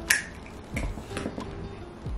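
One sharp click just after the start, then a few softer clicks and taps, over quiet background music with a beat.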